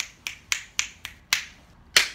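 Fingers snapping in a steady rhythm, about four snaps a second, with the last snap near the end the loudest.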